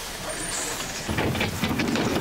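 A bus's engine running, with a hiss of air at the start that fades within half a second, and a louder low rumble from about a second in.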